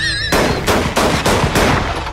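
A man's high, wavering laugh breaks off just after the start and is cut across by a rapid series of loud gunshots, about six of them, roughly three a second.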